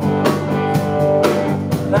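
Live rock band playing between sung lines: sustained guitar chords over a steady drum beat. The singer comes back in near the end.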